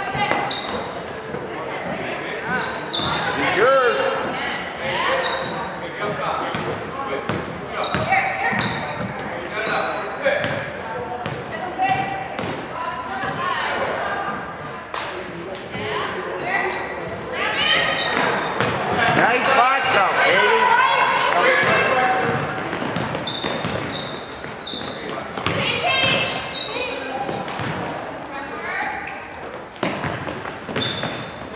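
Basketball game sounds in a large echoing gymnasium: indistinct voices of players and spectators calling out throughout, with the ball bouncing on the hardwood court and many short sharp knocks.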